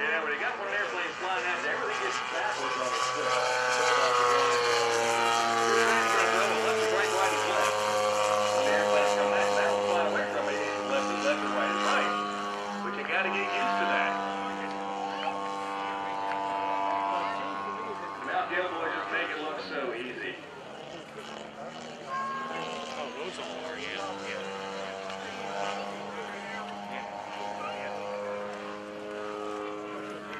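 Twin-cylinder two-stroke gasoline engine (Desert Aircraft DA-100) of a large-scale radio-controlled Pitts Model 12 biplane running in flight during aerobatics. Its note shifts in pitch through the manoeuvres, is loudest in the first half and grows quieter after about twenty seconds.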